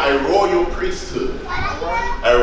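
Speech: a man talking into a handheld microphone.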